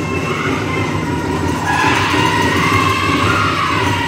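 Powwow drum and singers: a big drum beaten in a steady, fast rhythm under high-pitched, wavering group singing, played loud for the dancers.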